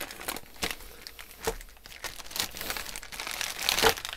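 Clear plastic parts bag crinkling irregularly as it is handled and opened by hand.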